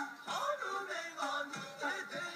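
Nagauta ensemble music accompanying a kabuki dance: shamisen struck with a plectrum in a quick run of sharp, ringing notes, with percussive strikes among them.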